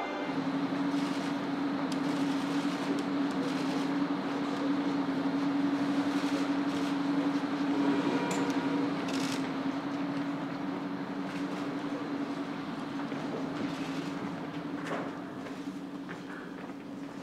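A bus engine running steadily with a low, even hum, with a few light clicks of movement over it.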